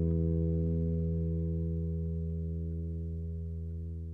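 The final chord of an acoustic guitar accompaniment ringing out with no further strumming, its notes held and fading away steadily.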